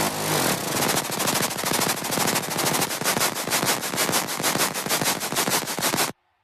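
Electronic dance music build-up: a rapid drum roll of sharp, even hits that speeds up, with almost no bass under it.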